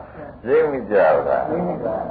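Speech only: a man giving a Buddhist sermon in Burmese.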